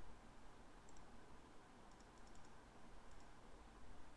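Faint computer mouse clicks against near-silent room tone: a single click about a second in, a quick run of several clicks around two seconds in, and another a second later.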